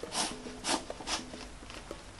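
Rubber screw-on base cap of a battery camping lantern being twisted tight by hand, rubber on rubber: three short rubbing scrapes about half a second apart, then fainter handling rustles.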